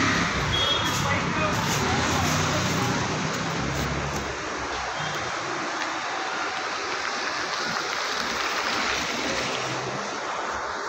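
Roadside traffic noise: a motor vehicle's engine rumbling close by for the first few seconds and fading about four seconds in, over a steady hiss of street noise.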